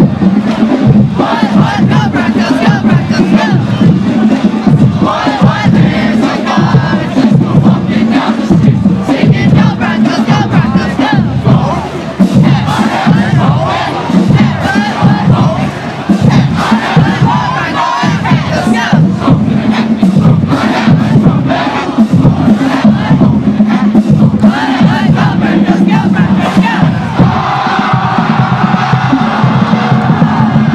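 A marching band on the move: many band members shouting and chanting together, with rhythmic drum hits driving underneath.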